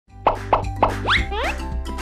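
Title-card jingle: three quick cartoon plop effects about a quarter second apart, then rising slide notes, over a steady bass-heavy music bed.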